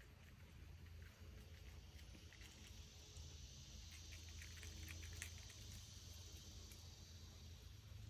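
Near silence: faint woodland ambience with a soft high hiss and scattered faint ticks and crackles, busiest in the middle.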